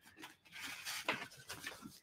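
Paper and cardstock rustling and sliding under the hands as a patterned paper layer is lined up on a folded card, in a few faint, short scrapes.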